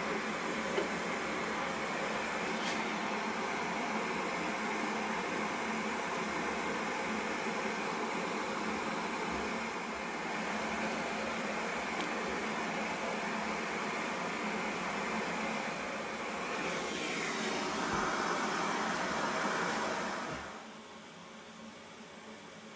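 Steady whooshing hum of a fan-driven machine running, with a light tap just under a second in. The noise swells briefly near the end, then drops away sharply about twenty seconds in, leaving a much quieter background.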